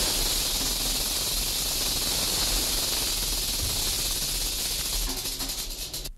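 Rattlesnake rattle: a steady, high, dry buzz that breaks into rapid separate clicks near the end before cutting off.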